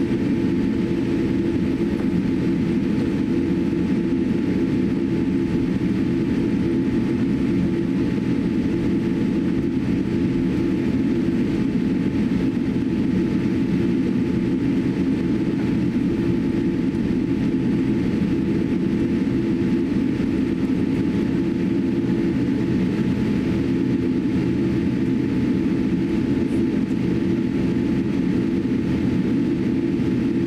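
Steady cabin noise inside a Boeing 787-8 taxiing on the ground after landing: a low, even rumble from the engines at idle and the cabin air system, with faint steady tones above it.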